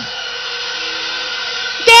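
A steady hum and hiss of background noise, fairly loud, with no distinct event in it.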